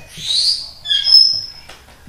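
A puppy whining in high-pitched squeals: a short rising squeal, then a louder, steadier whine about a second in, the sound of an over-excited young dog straining to move.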